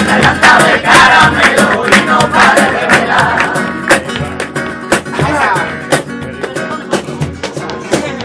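A crowd singing a villancico (Spanish Christmas carol) together to strummed acoustic guitar, with frequent sharp rhythmic beats such as claps. The singing thins out about halfway through, then picks up again.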